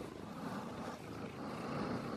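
Domestic cat purring close to the microphone, a rough steady rumble that swells and eases about once a second with its breathing as it is stroked.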